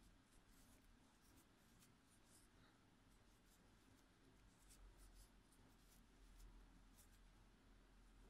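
Near silence, with faint scattered soft ticks and rustles of a crochet hook working yarn through stitches.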